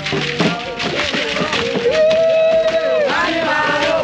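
A group of people singing a religious song with drumming. The voices hold long notes that bend in pitch.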